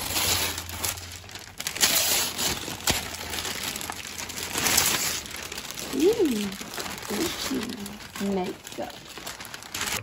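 Gift wrapping paper and tissue paper crinkling and rustling as presents are unwrapped and handled, in a string of surges, the loudest about two seconds and five seconds in.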